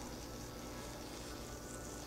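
HHO multi-tip burner rig running under a water-covered stainless plate: a faint, steady buzzing hum.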